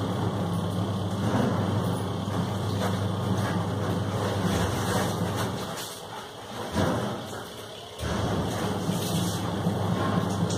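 A low, steady machine hum that fades away about six seconds in, with a brief louder sound just before seven seconds, then cuts back in abruptly at eight seconds.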